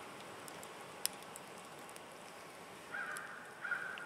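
Wood campfire crackling faintly, with a few sharp pops about a second in. Near the end a short call sounds twice.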